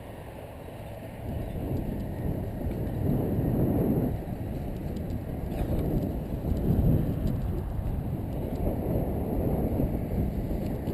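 Wind buffeting a camera's microphone: a low, uneven rumble that swells and fades with the gusts.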